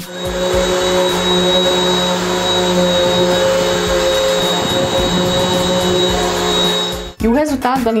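Philco 2000 W upright vacuum cleaner running at full suction over a shaggy rug: a steady rush of air with a high motor whine, breaking off about seven seconds in.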